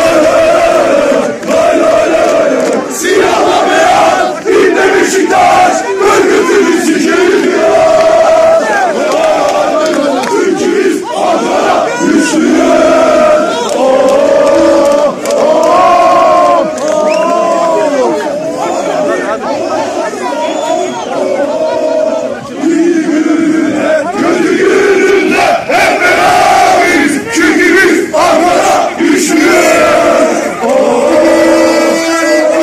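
A large crowd of football supporters chanting loudly in unison, the same sung phrases repeated over and over in a steady rhythm.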